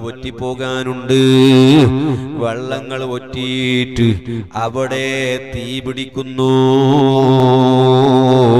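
A man's voice chanting a repeated Islamic dhikr phrase in long, melodic, drawn-out lines, with loud held notes about a second in and again near the end.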